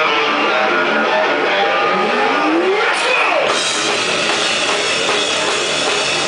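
Live heavy metal band playing loud, with electric guitars and a drum kit. About two seconds in, a note glides upward in pitch, and falling glides follow about a second later.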